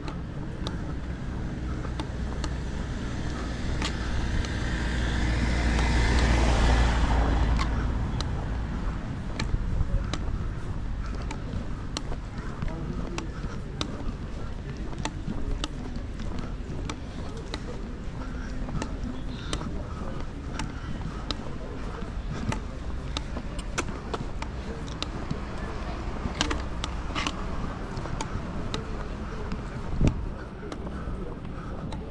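A car passes along the cobbled street, its sound swelling and fading about four to eight seconds in, over steady town street noise. Light sharp taps keep time with the walk throughout.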